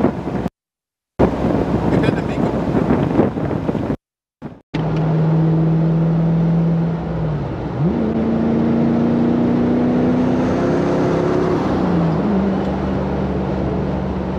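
Camaro SS V8 engine running at highway speed, heard from inside the open-top car with wind and road noise over it. Its note dips and then climbs about eight seconds in, and eases a little near the end. The sound cuts out completely twice in the first five seconds.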